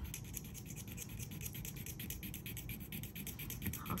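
Silver earring rubbed rapidly back and forth across a black testing stone, a quick, even scratching of about ten strokes a second, laying down a streak of metal for an acid test for sterling silver.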